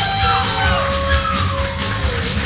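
Live blues band playing electric guitars, electric bass and drums, with a steady bass line and drum hits. A long held note slides down in pitch about halfway through.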